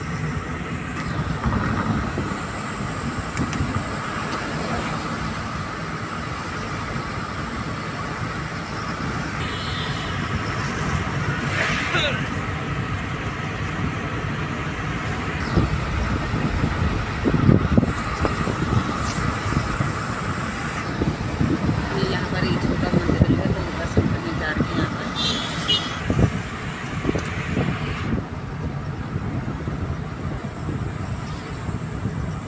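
Steady road and engine noise heard inside a moving car at highway speed.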